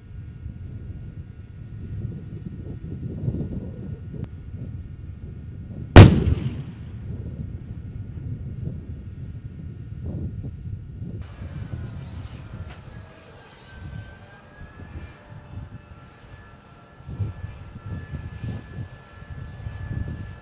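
M1 Abrams tank's 120 mm main gun firing once, a single sharp blast about six seconds in that dies away over a second. Around it runs a low rumble, and a high steady whine joins about halfway through.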